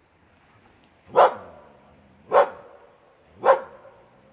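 Young Siberian husky barking three times, about a second apart, at a bear cub it has treed.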